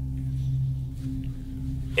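Background film score: a low, steady drone of sustained dark ambient tones.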